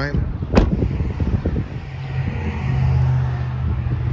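A pickup truck's door shut with a single sharp thud about half a second in, followed by a steady low rumble.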